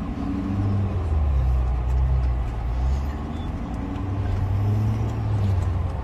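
Steady low rumble of a car's engine and road noise, heard from inside the moving car's cabin.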